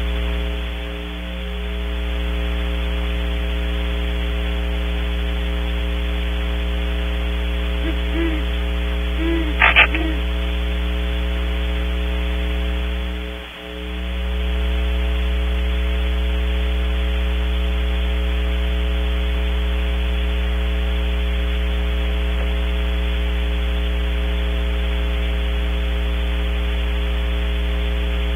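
Steady electrical mains hum from the nest-cam audio feed, dipping briefly about thirteen seconds in. A few faint, short, low hoots come through the hum about eight to ten seconds in, typical of great horned owls.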